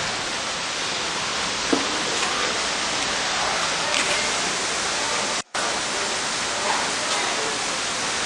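Steady rushing of falling water from a garden waterfall feature, with a brief cut-out about five and a half seconds in.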